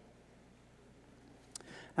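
Near silence: room tone of a hall's sound system, broken about one and a half seconds in by a faint click and a short soft noise.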